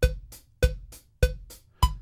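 Multitrack acoustic drum recording playing back in time with the DAW's metronome click at 100 BPM, a click about every 0.6 s with a higher-pitched one on the first beat of each bar. The drums show some timing discrepancies against the click and could be tighter.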